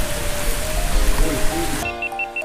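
Shallow rocky stream running, a steady hiss of water, with background music under it; the water sound cuts off abruptly near the end, leaving only the music.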